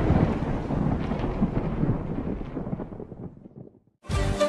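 Rumbling, thunder-like tail of a heavy boom in the soundtrack, dying away steadily and fading to silence near the end.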